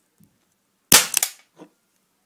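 CO2-powered airsoft replica of a Sig Sauer 1911 pistol, fixed-slide, firing a single shot: one sharp report about a second in, followed by a couple of fainter knocks.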